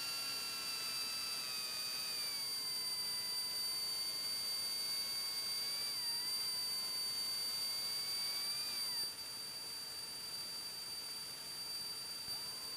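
Faint electric whine of the retractable landing gear's motor running after gear-up, heard over the intercom audio. It sags in pitch, rises briefly near the end and cuts off about nine seconds in, over a steady high electronic tone.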